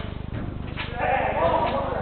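A player's drawn-out shout, wavering in pitch, starting about a second in, in a large echoing hall, over a steady low buzz.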